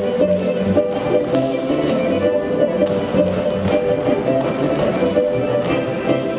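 Russian folk dance music led by fiddle and accordion, with a few sharp taps over it.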